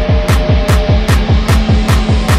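Electronic music with a fast run of deep kick drums, each dropping in pitch, about four a second, over held synth notes.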